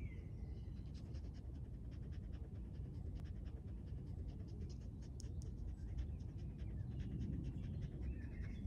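A white curly-coated dog panting rapidly and steadily close to the microphone, over a low rumble of wind on the microphone.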